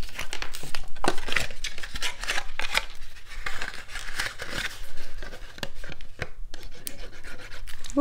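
A cardstock pillow box being handled and folded: irregular scratchy rubbing and rustling of card paper, with many small clicks and taps.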